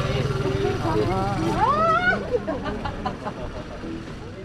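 Laughter and a woman's voice over a steady low engine drone, typical of a motorbike or scooter running in the street.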